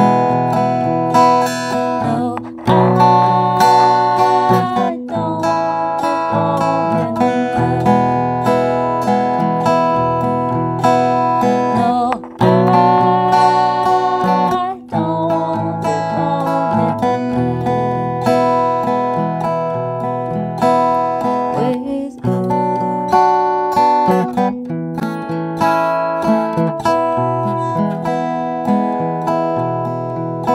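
Acoustic guitar played with fingerpicks in a slow, steady pattern, with a woman singing over it in long held notes.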